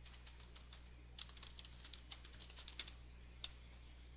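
Faint typing on a computer keyboard: quick runs of keystrokes, a short pause about a second in, then a longer run and one last keystroke near the end.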